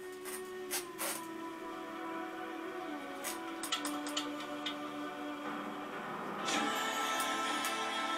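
Bansuri (bamboo flute) playing long held notes that step down in pitch about three seconds in, with a few light ticks over it; a fuller instrumental accompaniment swells in near the end.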